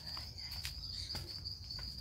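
An insect trills steadily at one high pitch, with a few faint clicks.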